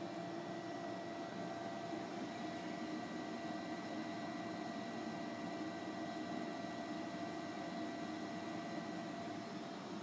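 Steady hum of running machinery with a few faint, unchanging whine tones above it, level throughout with no cutting sounds or knocks.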